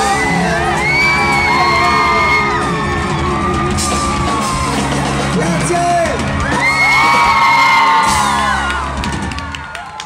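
A live pop band playing with a male lead singer, over a crowd whooping and screaming. The music winds down and ends near the end.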